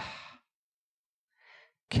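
A man's speaking voice trails off, followed by a pause in which a short, faint breath is drawn, about a second and a half in; his speech starts again right at the end.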